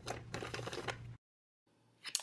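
Plastic mailer envelope rustling and crinkling as hands press a shipping label onto it, over a steady low hum, cutting off suddenly a little over a second in.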